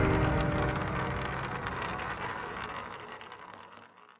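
Logo-intro music ending: the tail of a heavy hit, a dense crackling wash that fades steadily away to nothing over about four seconds.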